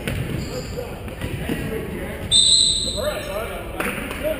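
A basketball bouncing on a hardwood gym floor amid voices. A referee's whistle is blown once, just past halfway, for under a second; it is the loudest sound.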